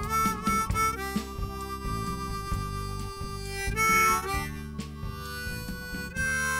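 A harmonica solo in a folk-rock song, playing long held notes over the band's guitar, bass and drums. A louder, brighter run of notes comes about four seconds in.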